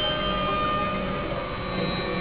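Dense experimental drone music: many steady held tones stacked from low to high over a constant low rumble, with no clear beat.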